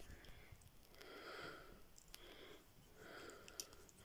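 Near silence: faint breaths close to the microphone, twice, with a couple of light clicks from handling a small plastic action figure.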